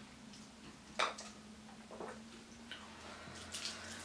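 Faint sipping through a plastic straw from a small drink carton, with a sharper click about a second in and a few softer mouth clicks after it.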